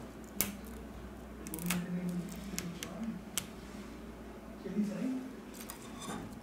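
Steel tweezers clicking against the phone's metal and plastic parts as the earpiece speaker is picked out of its seat: four or five sharp clicks spread a second or more apart.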